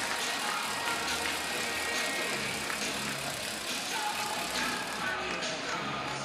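Music played over an ice hockey arena's public-address system right after a home goal, with a general hall murmur underneath.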